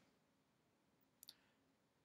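Near silence, broken about a second in by a faint, quick double click of a computer mouse button.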